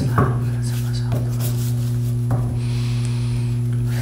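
A deck of tarot cards being handled and shuffled by hand: a few soft taps, then a brief rustle of cards sliding about three seconds in, over a steady low electrical hum.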